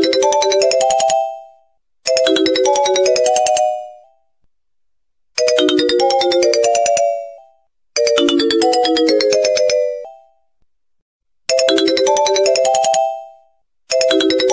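A short electronic melody of a few quick, mostly rising notes, repeated over and over like a phone ringtone, each phrase about a second and a half long with a short silence between.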